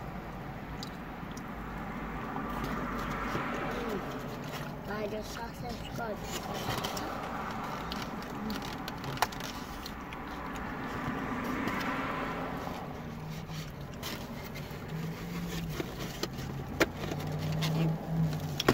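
Takeout food containers and a plastic bag being handled inside a car cabin: scrapes, rustling and a few sharp clicks. Underneath is a steady low hum with two slow swells of passing traffic, and faint voices now and then.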